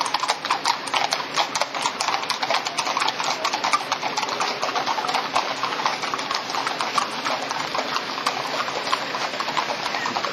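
Clip-clop of several shod horses walking on a wet paved street, many hoofbeats overlapping. The hoofbeats grow sparser and quieter in the second half.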